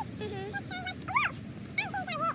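Young children's high-pitched voices calling and squealing as they play, in several short calls that rise and fall in pitch, over a steady low background rumble.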